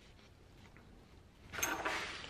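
Near silence with a few faint ticks, then near the end a brief rustle of bonsai wire being handled against juniper foliage.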